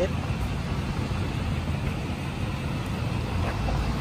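Steady low rumble of urban street background noise, with nothing standing out.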